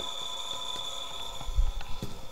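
360-watt permanent-magnet electric motor running steadily: a steady hum with a thin high whine. Near the end comes the low rumble of the camera being handled.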